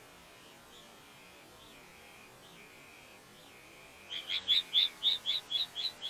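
Bee-eater calling at its nest burrow: faint chirps about once a second, then about four seconds in a quick run of loud, clear, high calls, about five a second.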